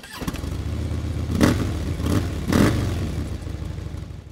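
Motorcycle engine running with a low pulsing rumble, its throttle blipped twice about a second apart, then fading near the end.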